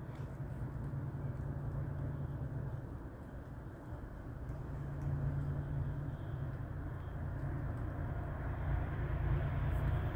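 Low, steady rumble of a train approaching from a distance, kind of quiet, growing slightly louder toward the end.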